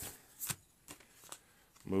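A few short rustles and taps of a paper scratch-off lottery ticket being handled. The sharpest comes about half a second in, with fainter ones after it.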